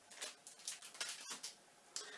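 Plastic sweet packet being handled and crinkled, a run of faint short rustles, with a small tap near the end.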